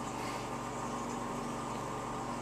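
Steady low hum with a faint hiss from running aquarium equipment.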